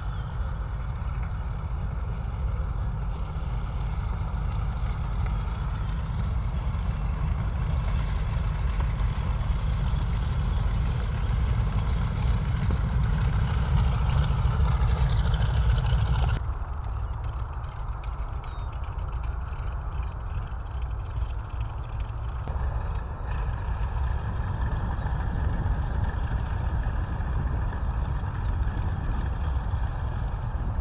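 Distant drone of a B-25 Mitchell's twin radial engines as the bomber approaches to land, over a heavy low rumble, growing louder through the first half. About halfway through the sound cuts off suddenly to a quieter drone that swells again near the end as another approach comes in.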